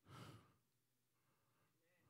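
A man's short breath into a handheld microphone in the first half second, then near silence.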